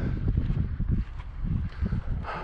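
Wind buffeting the camera's microphone: a gusty low rumble that rises and falls.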